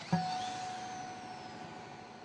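A single sharp strike of a metal tool on a steel reinforcing bar, followed by a clear ringing tone that fades over about a second and a half.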